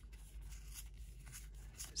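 Faint rustle and slide of a stack of Donruss basketball trading cards being flipped through by hand, over a steady low hum.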